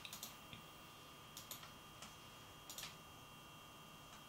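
Small cooling fan on a Radxa Rock 3A single-board computer running with a faint steady whine. A few soft clicks come in close pairs about every second and a half.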